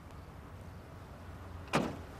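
A steady low rumble, then near the end a single sharp clunk of a pickup truck's door.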